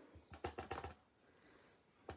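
Clear acrylic stamp block tapped on an ink pad: a quick run of about five faint, light taps in the first second.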